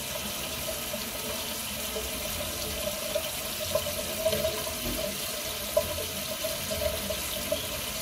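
A water tap running steadily into a bathroom sink.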